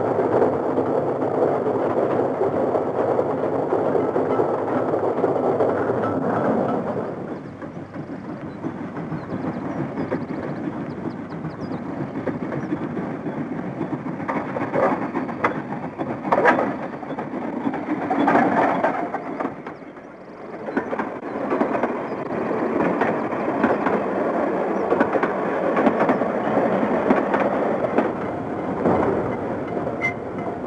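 Steam tram train rolling along the track: a steady rumble and clatter of wheels on rails, louder for the first seven seconds, then quieter, with a few sharp clicks from the running gear partway through.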